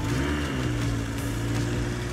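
Car engine sound effect: a steady engine hum that rises briefly in pitch at the start, then holds level.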